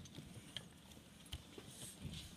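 Faint handling of a small toy car on paper on a tabletop, with two light clicks about half a second and a second and a third in.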